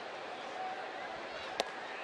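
Steady ballpark crowd murmur, with one sharp pop about one and a half seconds in: a pitch smacking into the catcher's mitt for a called strike.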